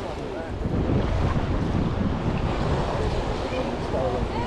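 Small waves washing onto a sandy beach, with wind buffeting the microphone, a steady rushing noise that picks up slightly about a second in. Faint voices of people nearby.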